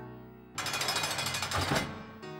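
A rapid, loud rattling noise that starts about half a second in and lasts about a second and a half, over cartoon background music.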